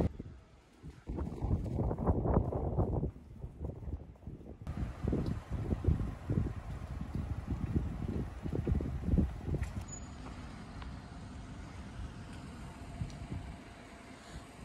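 Wind buffeting the camera's microphone in irregular low rumbles, dying down to a quieter steady outdoor hiss after about ten seconds.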